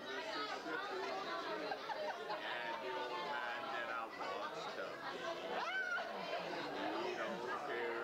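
Many people talking at once: the steady hubbub of diners' overlapping conversations in a restaurant dining room.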